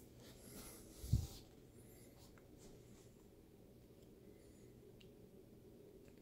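Faint rustling handling noise with one dull bump about a second in, as a handheld thermal camera is picked up and handled, over a low steady hum.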